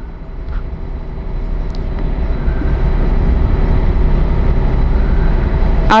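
A loud low rumble with no clear pitch, building steadily over the first few seconds and then holding.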